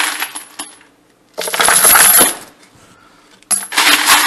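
Spent 5.56 brass cartridge cases poured into a plastic tumbler drum holding steel pin media, a loud metallic clatter and jingle of cases on cases and pins. It comes in three pours: the first fades out in the first second, the second comes about a second and a half in, and the third starts near the end.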